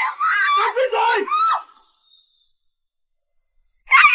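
A young woman screaming in terror as she is held by the throat, shrieking “Murder!” for about a second and a half. After a pause of about two seconds, her screaming starts again near the end.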